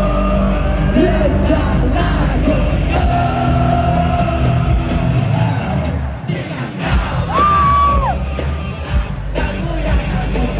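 Pop-punk band playing live with a singer. About six seconds in the band thins out for a moment, then a single high note is held for about a second.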